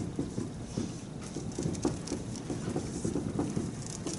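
Dry-erase marker writing on a whiteboard: an irregular run of short taps and strokes as the letters are formed.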